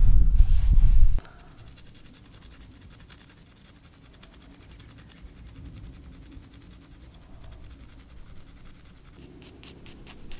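A low rumble for about the first second, then faint, steady fine scratching: stone being abraded by hand as a small argillite effigy is ground down to shape.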